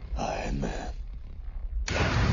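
A man's voice speaks briefly early on. Just before the end, a sharp crack from the Infinity Gauntlet's finger snap breaks into a loud, sustained blast of rushing energy.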